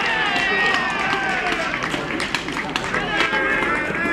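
Many voices shouting and cheering together in celebration of a goal just scored, lots of overlapping calls that slowly drop in pitch.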